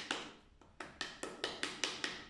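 Wooden plank tapping against the wall of a clay slab pot to beat it into shape: a quick run of short, light knocks, about five a second, with a brief lull before the middle.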